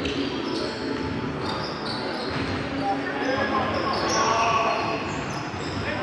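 Basketball game sounds echoing in a large gym: a ball bouncing on the hardwood, short high sneaker squeaks, and players' voices and calls.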